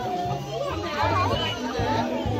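Music playing with steady held bass notes, while a crowd of young children chatter and call out over it.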